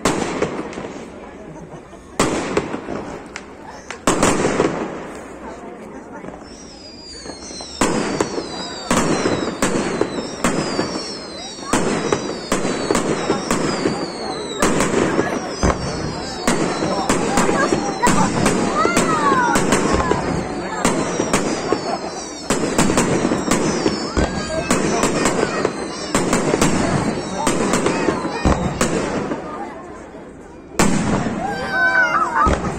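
Aerial fireworks display: shells bursting with sharp bangs, a few seconds apart at first, then coming thick and fast from about eight seconds in to near the end. High falling whistles run through the bursts between about seven and fifteen seconds in.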